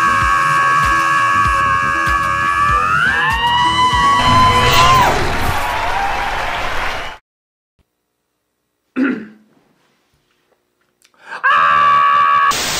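A man's long, held scream over a pop song with a low beat. It rises in pitch about three seconds in, wavers, and cuts off suddenly after about seven seconds. After a short burst in the silence, the scream starts again near the end.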